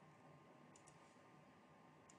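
Near silence: faint room hiss, with a quick pair of faint clicks about three-quarters of a second in.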